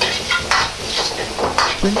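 A metal wok ladle scraping and turning crumbled tofu mince in a hot wok over a steady sizzle, with a few scraping strokes about half a second apart.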